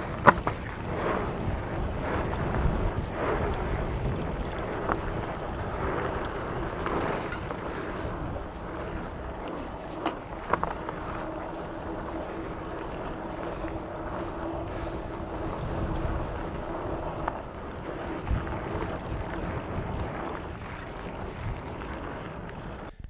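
Trek Fuel EX 9.8 27.5+ full-suspension mountain bike being ridden down a rough dirt trail: fat tyres rolling over dirt, wind on the microphone and the bike rattling. Sharp knocks come over the bumps, the loudest just after the start. The rider takes these for the suspension bottoming out, with the rear shock set too soft.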